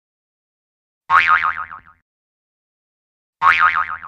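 A short cartoon-style 'boing' sound effect with a fast wobbling pitch that fades out in under a second, heard about a second in and again near the end.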